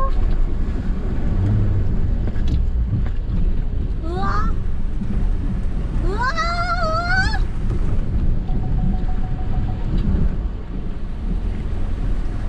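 A SsangYong Rexton Sports Khan pickup driving slowly through a shallow stream ford onto gravel, heard from inside the cab as a steady low rumble of engine and tyres with water washing around the wheels. A voice exclaims briefly twice in rising tones, around four seconds in and again at about six seconds.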